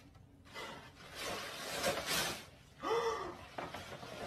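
A soft hissing noise lasting a second and a half, then a short voiced gasp about three seconds in.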